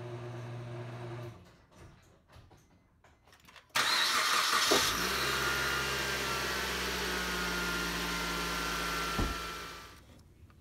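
Car engine cranked and started: a sudden loud onset about four seconds in, catching within a second and idling steadily, then switched off near the end with a click and running down. Before that, a short steady hum in the first second or so and a few light clicks.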